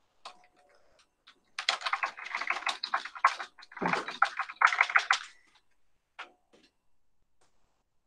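Rapid typing on a computer keyboard in several close runs of keystrokes, from about one and a half seconds in until about five and a half seconds in.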